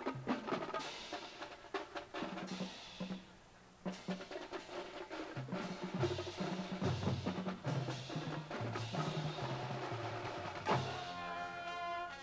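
Marching band drumline playing a percussion passage: rapid snare and tenor drum strikes and rolls over pitched bass drum notes, with a brief break about three and a half seconds in. Near the end a loud hit is followed by held band tones.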